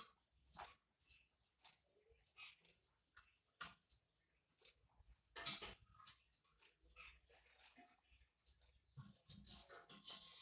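Faint, irregular scratching of a ballpoint pen writing on paper in short strokes.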